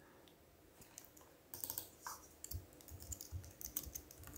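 Faint keystrokes on a computer keyboard: a quick, uneven run of taps starts about a second and a half in, after a near-silent pause.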